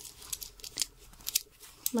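Small metal strap hooks and slide adjusters on a pinafore's straps clicking lightly as the straps are hooked onto the waistline, a handful of faint clicks.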